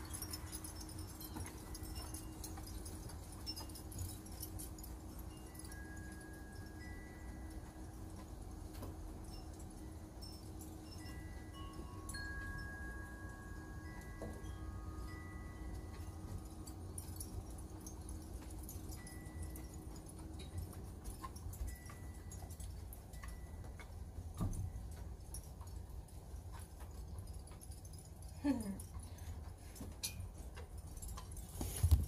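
Wind chimes ringing faintly: scattered clear single tones, a few at a time and sometimes overlapping, dying away after about twenty seconds.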